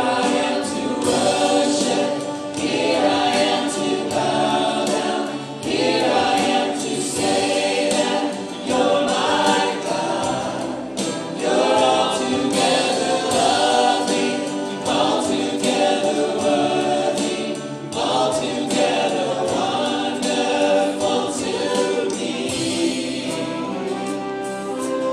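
Live contemporary Christian worship song: several singers singing together into microphones over a strummed acoustic guitar.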